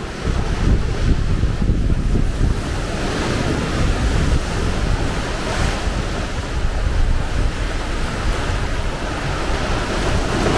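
Sea waves surging and breaking against the base of a rocky cliff and cave mouth, with wind buffeting the microphone. The sound swells up just after the start and then holds steady.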